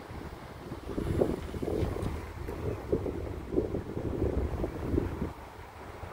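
Wind buffeting the phone's microphone: a low rumble that rises into irregular gusts from about a second in, easing off just after five seconds.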